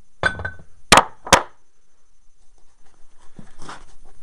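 Two sharp metal knocks about a second in: a cast iron weight knocking against the iron pole of a homemade electromagnet, which will not hold it with the power off. A short low buzz comes just before them.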